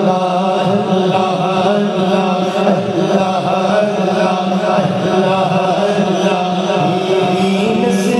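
A man chanting a naat, Urdu devotional poetry, into a microphone over a hall PA, with long, wavering sung lines. A steady low drone runs beneath the voice.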